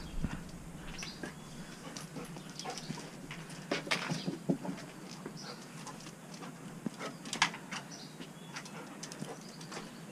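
A dog moving about on a concrete porch and jumping up against the house: scattered short taps and scrapes of its claws and gear, loudest about four and seven seconds in.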